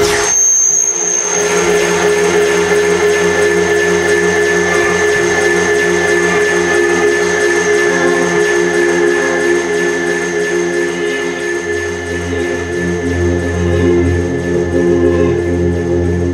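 Live electronic band jam, with electric guitars and synthesizers holding a sustained chord. A deep bass note comes in about twelve seconds in.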